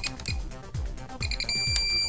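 Spektrum DX5e radio transmitter trim beeps: a few quick short beeps as a trim lever is pushed, then one long tone near the end, which signals that the trim is at centre. Background music with a steady beat plays underneath.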